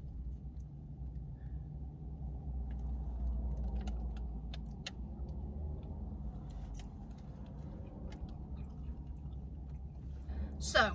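Someone chewing a mouthful of cheese quesadilla, with scattered small clicks and crinkles from a sauce packet and wrapper, over a steady low hum.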